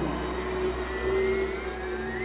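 Movie trailer soundtrack between narrator lines: a steady low drone under a held tone, with a faint rising glide coming in during the second half.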